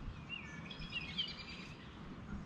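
Faint outdoor ambience with a few short, high songbird chirps that rise and fall, clustered in the middle.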